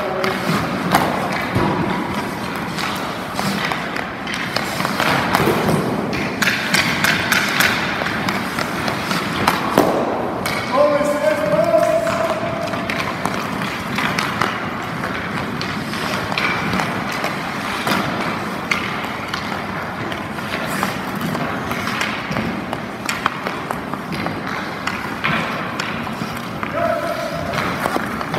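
Hockey drill on ice: pucks shot off sticks, blades knocking on the ice and pucks striking goalie pads, with skates scraping, as many sharp knocks and clacks scattered irregularly over a steady rink din.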